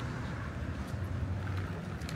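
Steady low rumble of road traffic passing at a distance, with no single event standing out.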